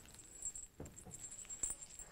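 Faint rustle and a few light clicks of a length of cotton fabric being unfolded and smoothed out by hand.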